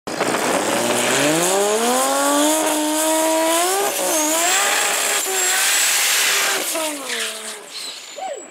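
Drag racing car doing a burnout: the engine revs climb steeply over the first two seconds and hold high while the rear tyres spin with a hissing squeal, with a brief dip about four seconds in. The revs fall away near the end.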